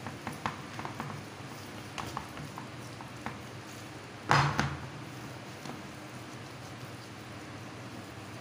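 Hands rubbing and kneading salt into a raw leg of meat on a plastic tray: soft wet clicks and slaps of skin on meat, with one louder burst of handling noise about four seconds in.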